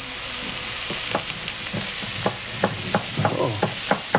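Mussels sizzling in a hot frying pan, with irregular sharp knocks of a knife chopping basil on a wooden cutting board, coming more often in the second half.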